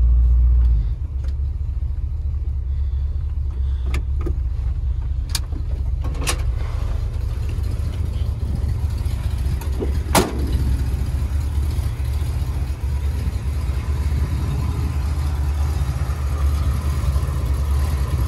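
Ford F250 pickup's V8 idling steadily with a deep low rumble, a little louder in the first second. A few sharp clicks come over it, and a louder clack comes about ten seconds in as the driver's door is handled.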